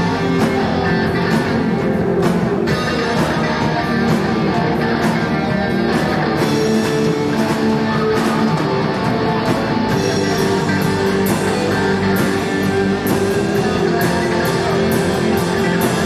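Live rock band playing loudly and steadily: a drum kit with repeated cymbal and drum hits under electric guitar.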